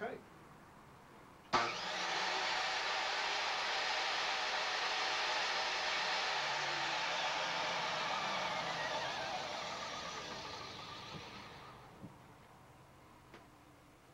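Electric miter saw switched on with a sudden start, its motor and blade running steadily for about seven seconds, then switched off and winding down over a few seconds. Small clicks follow near the end.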